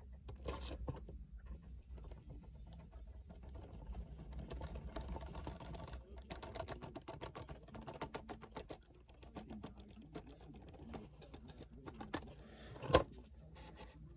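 Rapid light tapping of a paintbrush being poked (stippled) onto the plastic roof of an HO scale boxcar to lay on rust weathering, with one sharper click about a second before the end.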